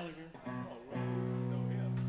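Guitar chords being played: a first chord about half a second in, with a brief dip in pitch, then a fuller chord struck about a second in and left ringing steadily.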